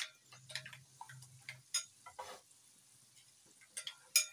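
Faint, irregular ticks and small clicks from an aluminium tawa heating on the stove with a few spoonfuls of oil in it, with one sharper click right at the start.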